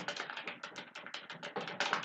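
Fast typing on a computer keyboard: a quick, uneven run of keystroke clicks, about ten a second.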